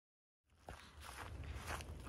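Silence, then about half a second in, a hiker's footsteps walking on a pine-needle-covered dirt trail, with a low wind rumble on the microphone.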